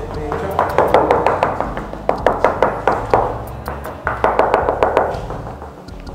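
A hand rapidly knocking and tapping on a finished room wall, checking the wall's build. It comes in two quick runs: a long run through the first half and a shorter one near the end.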